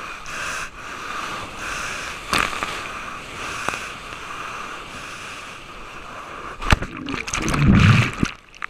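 Sea water rushing against a waterproof action camera's housing as a wave breaks over it, a steady hiss with a single sharp knock early on. Near the end it gets loud, with a low churning rumble and several sharp knocks as the camera is tumbled under the whitewater.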